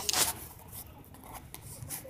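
Short rustling and scraping noises, loudest in the first half second, then faint rustling with a few small clicks.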